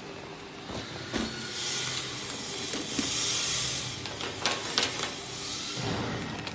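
Crinkling of a clear plastic bag being handled, with a few sharp clicks of small plastic sticks knocking together.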